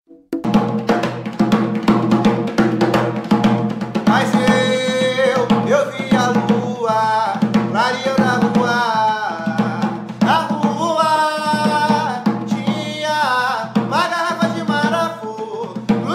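A man singing a ponto (sacred chant) for Bará in Portuguese, to a steady rhythm he plays by hand on a drum. The drum starts a moment in, and the voice enters about four seconds in.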